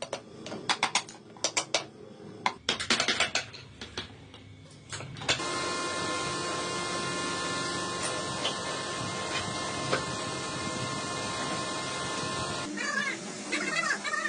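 Hand-scraping of a bent wooden ring in quick bursts of short, sharp strokes with pauses between. About five seconds in, the sound switches abruptly to an electric wood lathe running steadily with a hum and a high whine. Shortly before the end, that steady sound gives way to a wavering rubbing sound.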